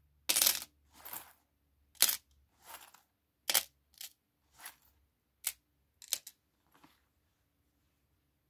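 Small metal charms clinking as they are dropped and moved by hand on a mirrored tray. About a dozen short, sharp clinks come at irregular intervals, the first a brief rattle, and they stop near the end.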